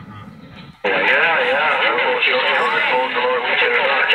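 CB radio receiving 27.385 MHz lower-sideband skip: a faint voice, then about a second in a strong incoming transmission cuts in suddenly, a loud, warbling voice through the radio's speaker.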